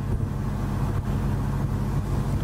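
Steady low hum of room noise, with no other distinct event.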